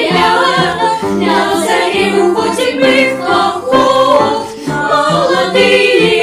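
Children's choir singing a wartime Soviet song with piano accompaniment.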